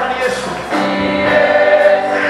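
Church choir singing a gospel praise song.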